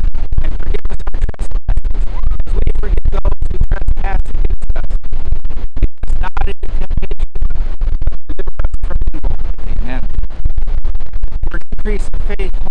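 Heavy wind buffeting the microphone, a loud, rough rumble with frequent brief dropouts, over a man's voice speaking.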